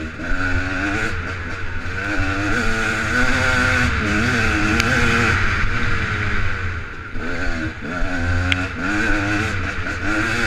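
Enduro dirt bike engine ridden hard through single track, its revs rising and falling constantly as the throttle is worked, with a couple of brief sharp ticks over it.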